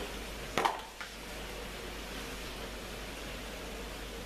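Olives in tomato sauce simmering in a pan on a gas stove, a soft, steady hiss, with a sharp click about half a second in.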